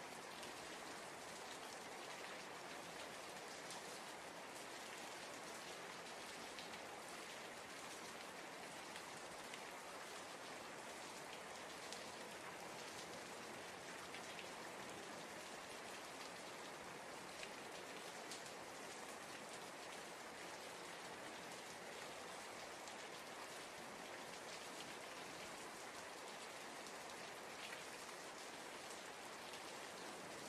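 Steady rain: an even hiss with a scattered patter of drops.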